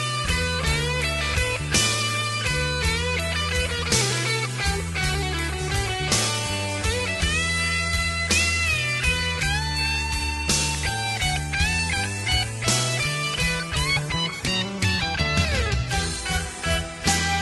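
Instrumental break of a punk rock song: a lead electric guitar plays a melody with bent notes over bass and drums, with a cymbal crash every couple of seconds.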